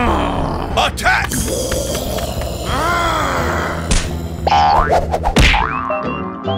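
Cartoon sound effects: a springy boing along with a cartoon character's wordless groans and cries, over background music.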